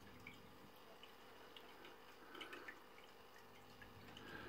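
Near silence: room tone with a few faint, light ticks from a plastic RC car body shell being handled.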